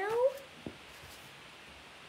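A short pitched call that rises sharply in the first moment, then one soft click and quiet room tone.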